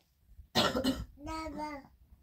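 A cough, the loudest sound, about half a second in, followed by a toddler's drawn-out babbling call.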